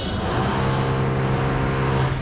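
A motor vehicle engine running with a steady, even-pitched hum that starts about half a second in and fades near the end, over general street noise.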